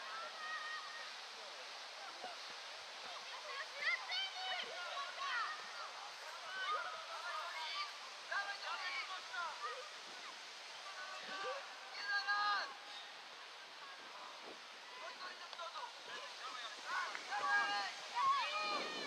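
Scattered distant shouts and calls of players on a football pitch, short and high-pitched, over a steady background hiss.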